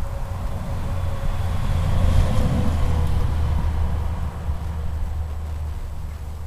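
Low steady motor-vehicle engine rumble, swelling about two seconds in and easing off, with a faint whine that dips slightly in pitch.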